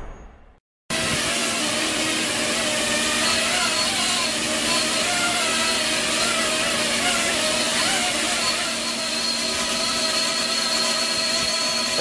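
Small quadcopter drone's electric motors and propellers whirring steadily as it hovers on wirelessly transmitted power, with a wavering pitch and a thin high whine over it. The sound cuts in abruptly about a second in, after the end of a music fade.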